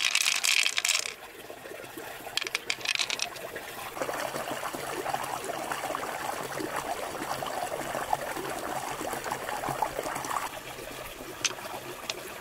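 Wet handling of a freshwater mussel and its pearls: two short hissing bursts, then about six seconds of small clicks and trickling water.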